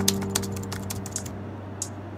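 Keyboard typing: a quick, uneven run of key clicks, over background music with held low chords.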